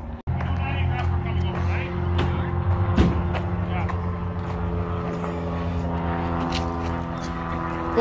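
An engine running steadily at an even, low pitch, starting just after a brief cut at the very start. A single sharp knock about three seconds in.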